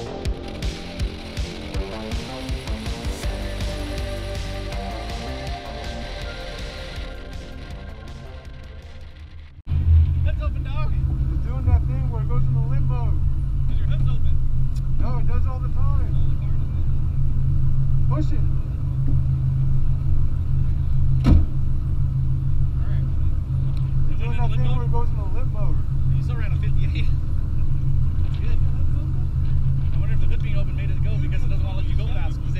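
Background music that fades over the first ten seconds; then, after a sudden cut, the Dodge Challenger Widebody's V8 idling with a steady low rumble, with faint voices around it.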